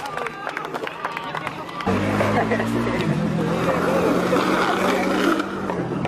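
Skateboard clicks and knocks on concrete, with voices around. About two seconds in, music with a steady bass line comes in over crowd chatter.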